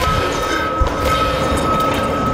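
Loud horror-film sound effect: a dense rumbling noise with a steady high-pitched whine running through it, cutting in suddenly.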